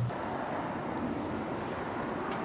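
Steady outdoor noise: an even rush of wind on the microphone, with no distinct events.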